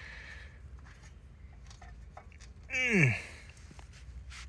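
Faint clicks and handling noise as the oil dipstick on a log splitter's Briggs & Stratton engine is screwed back in. Near the end comes a man's short groan that falls steeply in pitch.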